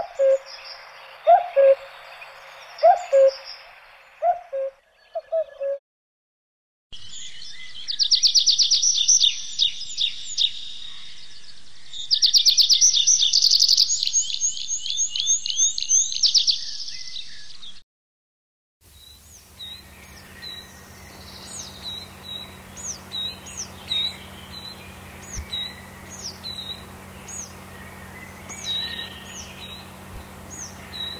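A common cuckoo gives its low two-note 'cuck-oo' about every second and a half. After a short pause, a tree pipit sings two long trilled phrases. After another pause, a coal tit repeats a high, thin two-note phrase over a low steady hum.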